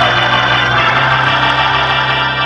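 Organ holding a sustained chord, steady with no breaks.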